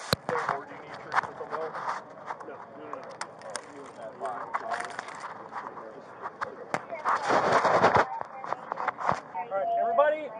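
Indistinct voices in the background, with knocks and clothing rustle against a body-worn camera as its wearer walks on asphalt. A loud rush of noise lasting about a second comes near the end.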